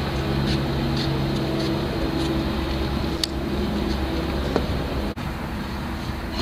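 Distant motor traffic with a steady low engine drone, which fades out about four and a half seconds in.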